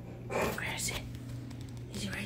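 A person's whispered voice, one short breathy utterance about half a second in.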